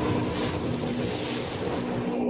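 A rushing whoosh sound effect, like wind, over a steady low drone in intro music. The whoosh cuts off just as it ends.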